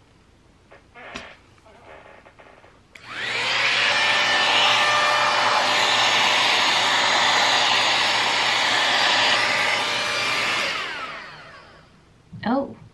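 Dyson Airwrap dupe hot-air styler with its curling barrel attachment switched on about three seconds in. Its motor spins up with a rising whine and blows steadily, then is switched off near the end and winds down with a falling pitch. Before it starts there are faint rustles of hair being handled.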